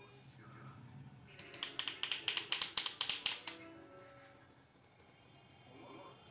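Rapid tapping of a barber's hands on a man's head during an Indian head massage: a quick run of sharp taps, about eight a second, starting just over a second in and lasting about two seconds.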